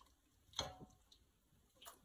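Mostly near silence, with a few faint soft ticks and taps, the clearest about half a second in, as pieces of shredded rotisserie chicken go into a pot of broth.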